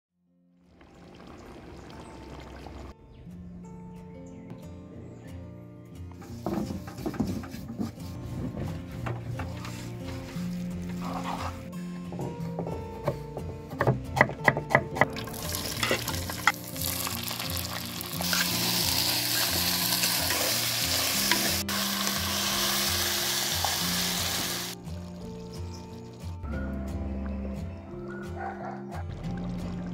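Food sizzling as it fries in hot oil, loudest through the second half, with a run of sharp clicks about halfway, over steady background music.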